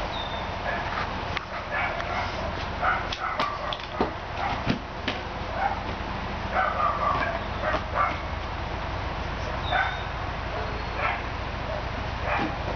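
Doberman puppy making short, scattered yips and whimpers while it noses and digs into blankets in a plastic dog bed, with rustling and a few sharp clicks.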